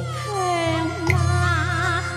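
Cantonese opera song: a high, drawn-out melody line that glides and wavers with vibrato, sung in the female (dan) role over a Cantonese opera ensemble with a steady low accompaniment.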